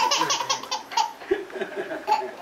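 A baby laughing out loud: a quick run of short laughs in the first second, then fewer, scattered ones.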